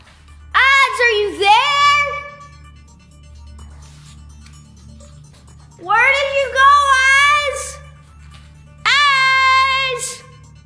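A boy yelling out three long, loud, high-pitched calls, the first about half a second in, the next two near the middle and the end. A low, steady background music bed runs underneath.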